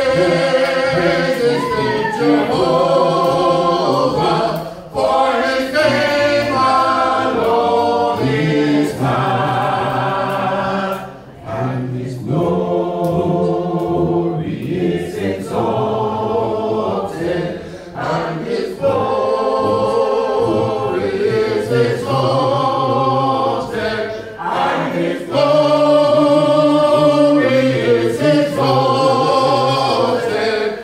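A church congregation singing a hymn a cappella, voices only with no instruments, in sustained phrases broken by short pauses.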